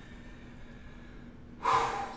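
A man's breathy exhaled "whew" about a second and a half in, after a quiet stretch of room tone.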